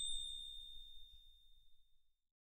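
A single high bell-like ding fading away: a clear ringing chime tone dying out slowly after being struck.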